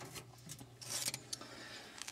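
Faint rustling from the camera being handled and moved, with a short hiss about halfway through and a few soft clicks.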